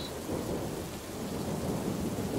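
Steady rain with a low rumble of thunder under it.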